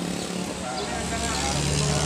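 A motor vehicle engine running with a steady low hum that drops in pitch about one and a half seconds in, with people talking in the background.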